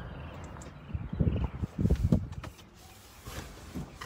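Irregular low bumps and rustles from a handheld phone being moved around inside a car, loudest between about one and two and a half seconds in.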